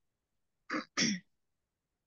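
A person clearing their throat: two short bursts close together, about a second in.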